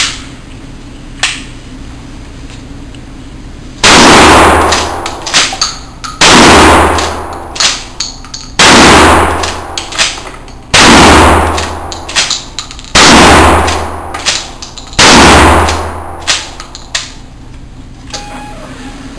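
Six 12-gauge shotgun blasts from a Franchi SPAS-12 fired in pump-action mode, about two seconds apart and starting about four seconds in. The shells are a mix of light dove loads and Express long-range loads. Each shot echoes in the indoor range, and the clack of the pump being worked follows between shots.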